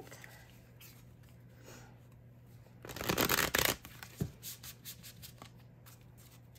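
A deck of oracle cards being shuffled by hand: a quick, loud burst of shuffling about halfway through, lasting about a second, then a single tap and a few soft card ticks.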